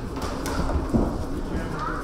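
Hall noise during a boxing bout: spectators' voices and the boxers' movement in the ring, with a sharp thud about a second in.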